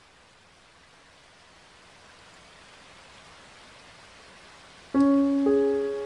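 Steady hiss of rain falling on pavement, slowly growing louder. About five seconds in, a piano comes in with a loud chord, followed half a second later by another note that rings on.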